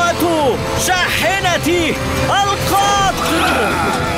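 Cartoon characters' voices calling out in short excited exclamations over background music.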